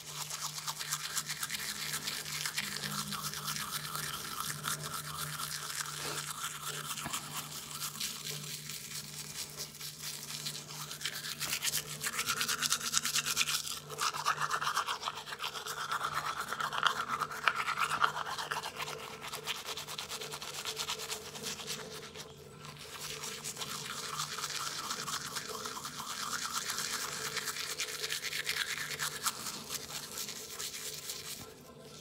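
Manual toothbrush scrubbing a tongue coated in foaming toothpaste: continuous wet, bristly brushing strokes, loudest about halfway through, with a brief let-up about two-thirds of the way in.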